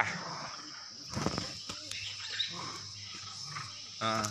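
Steady high-pitched drone of insects in the surrounding forest, with a few faint clicks about a second in and a brief faint call a little later.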